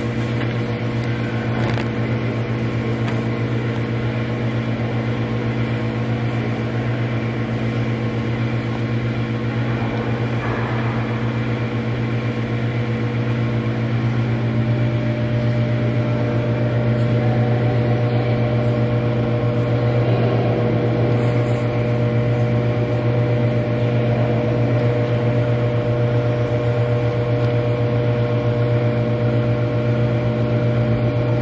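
Steady low mechanical hum made of several held tones, with a higher tone joining about halfway through.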